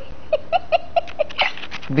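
A woman laughing: a quick run of short bursts, about seven a second, that dies away about three-quarters of the way through.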